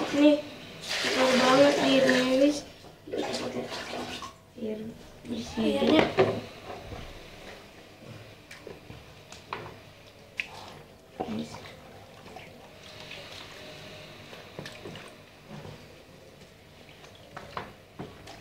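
Water lettuce plants being rinsed by hand in a plastic basin of water: soft sloshing with scattered small splashes and drips.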